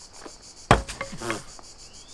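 A thrown hatchet lands with a single sharp thud about two-thirds of a second in, followed by a brief voice.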